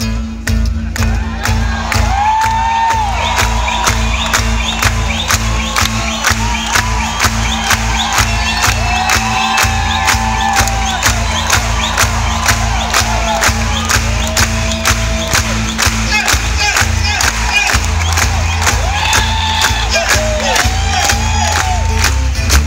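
Twelve-string guitar playing a driving instrumental passage with a crisp, evenly spaced beat, while a crowd whoops and cheers over it throughout.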